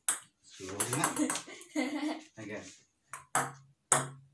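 Ping-pong ball clicking off a wooden dining table and rubber paddles: one sharp click at the start, then three more near the end, a quarter to half a second apart. In between, a person's voice for about two seconds.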